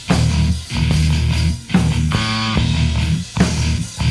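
A rock or metal band recording, with electric guitar and bass guitar playing a riff broken by short stops about once a second, and a brief held note about two seconds in.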